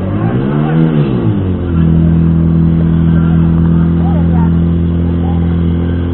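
Portable fire pump's engine briefly rising and falling in pitch, then running steadily at high revs from about two seconds in as it pumps water through the laid-out hose lines in a fire-sport attack.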